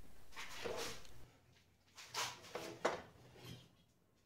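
A pine board being handled and set on a miter saw's table: a few short, faint knocks and scrapes in the second half, after a faint steady hum drops away a little over a second in.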